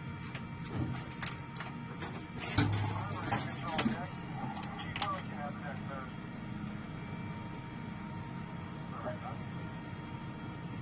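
Indistinct voices over a steady low hum, with several sharp clicks and a knock between about one and five seconds in.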